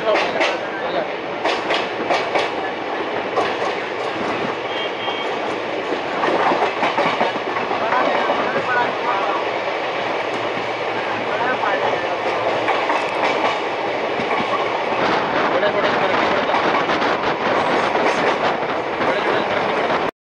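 Moving Indian Railways express passenger train heard from on board its coaches: steady running noise with wheels clicking over rail joints, in clusters at the start and again later on.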